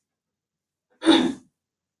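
A person clearing their throat once, a short sound about a second in.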